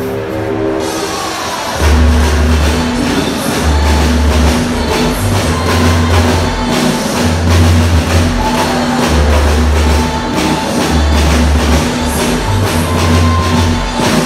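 A drum kit played live over a musical accompaniment with long, heavy bass notes. The full beat and bass come in louder about two seconds in and run as a steady, driving rhythm.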